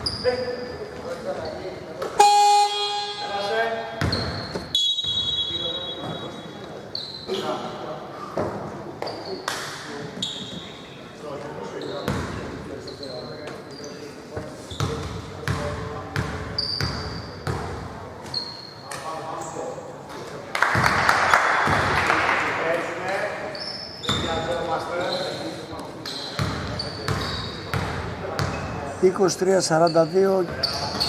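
Indoor basketball game in a big echoing hall: the ball bouncing, short sneaker squeaks and players calling out. About two seconds in, a horn sounds for about two seconds, followed at once by a short high whistle.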